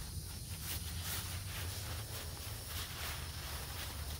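Quiet outdoor background noise: a steady low rumble with a few faint rustles about a second in.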